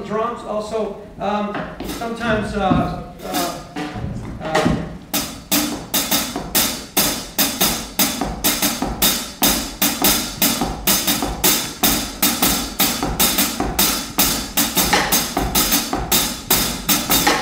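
Drumsticks playing a steady jazz time-keeping pattern on a drum kit's ride cymbal, about three strokes a second, starting about five seconds in.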